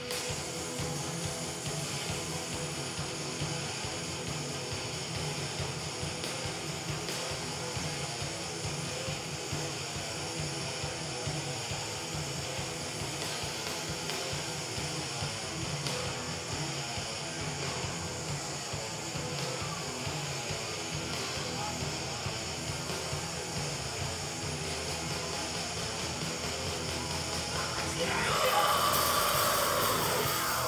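Live rock band playing: amplified guitars, bass and drums in a dense, steady wall of sound with vocals over it, getting louder in the last couple of seconds with a sliding high line.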